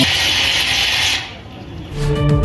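Dance music cuts off, leaving a steady hiss-like noise from the live stage recording that fades away a little after a second in.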